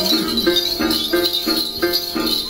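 Then ritual music: a plucked lute playing an even run of notes, about four a second, over a continuous high jingling of shaken bell-rattles.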